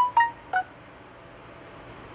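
A quick run of three short electronic beeps in the first half-second, each at a different pitch and stepping downward, followed by faint steady room hiss.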